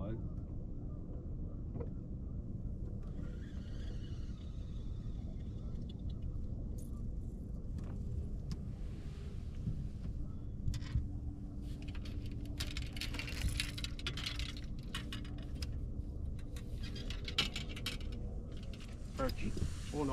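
A steady low rumble, with light clicking and rattling of fishing tackle that grows thick in the second half, as an angler works a light jigging rod and reel.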